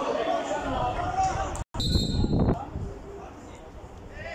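Outdoor football-pitch ambience with faint voices of players. The sound drops out completely for a moment a little before halfway, then comes back with a brief low rumble on the microphone.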